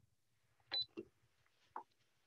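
Near silence on the call, broken by a few faint, brief sounds: one with a short high tone about three-quarters of a second in, then another at one second and one more near the end.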